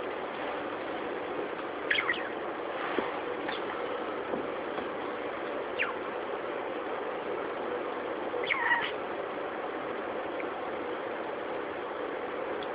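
Pet budgie giving a few short, falling chirps, the loudest pair about eight and a half seconds in, over a steady background hiss.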